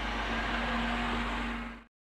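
A car coming along a street, its engine and road noise steady over camcorder tape hiss and a low hum; the sound cuts off abruptly near the end.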